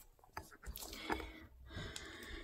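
Faint handling noise: a few soft clicks and rustles as the phone and a plastic digital pregnancy test are moved about.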